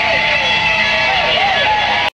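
Heavy-metal band playing loud in a club, a dense distorted wash with a pitched line that bends up and down above it.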